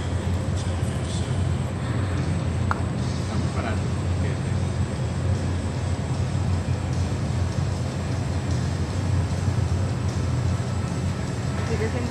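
Steady low rumble and hum of background noise in a large indoor arena, with faint distant voices.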